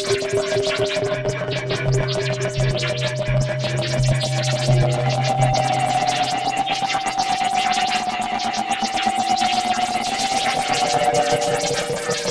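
Algorithmic electroacoustic computer music made in SuperCollider: sustained electronic tones that shift in pitch over a dense stream of rapid clicks. A low pulsing tone sounds for the first few seconds.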